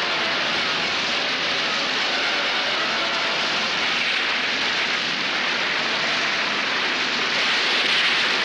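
Storm sound effects: a steady rushing noise of wind and rough sea, swelling a little near the end.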